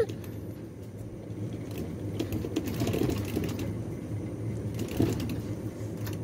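Claw machine's motorised gantry running as the claw moves over the plush toys, a mechanical whirring over a steady low hum, swelling a couple of seconds in.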